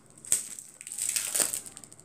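Packaging being crumpled and torn open by hand, with a sharp snap about a third of a second in and a louder burst of crinkling about a second and a half in.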